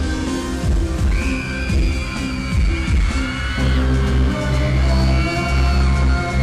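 Loud live pop music with a heavy bass line and a sustained synth-like melody, an instrumental stretch without singing.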